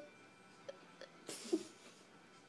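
A brief stifled laugh: a breathy snort with a short voiced catch, over faint TV audio.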